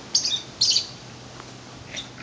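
Sulphur-crested cockatoo giving two short, harsh squawks about half a second apart, near the start.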